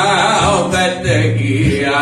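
A man singing a gospel song with held notes, accompanying himself on acoustic guitar.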